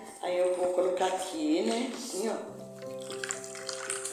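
A woman's voice over background music; in the second half the music holds steady tones.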